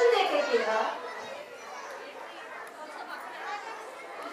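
A voice speaking briefly in the first second, then low background chatter of children and audience in a large hall.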